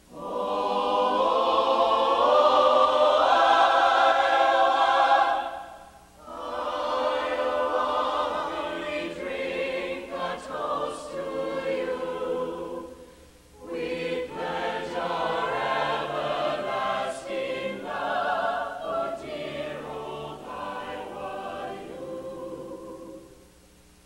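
Mixed choir of men's and women's voices singing in harmony, in three phrases with short breaks between them. The first phrase is the loudest, and the singing ends about a second before the close.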